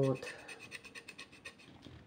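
A woman's voice ends a short word at the very start, followed by faint, rapid scratchy ticking.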